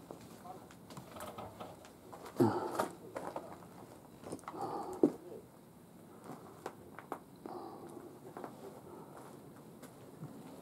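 Quiet small-room sound in a stone barn with faint scattered clicks and shuffling. A short, loud voice-like sound with a gliding pitch comes about two and a half seconds in, and a sharp knock about five seconds in.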